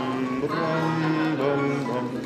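A plucked-string orchestra of mandolins and guitars playing music with long held notes.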